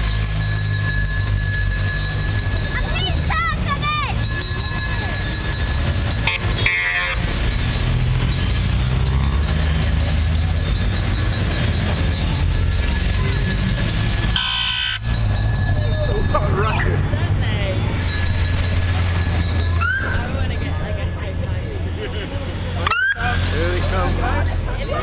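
A convoy of police and escort motorcycles riding slowly past one after another, their engines running with a steady low rumble, with spectators' voices calling out over them.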